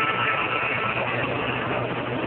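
Steady street noise of a crowd walking across a paved square, with a low, steady hum running underneath.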